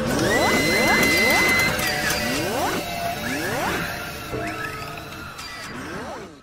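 Electronic intro music with repeated rising whoosh sweeps and a held high tone near the start, gradually fading toward the end.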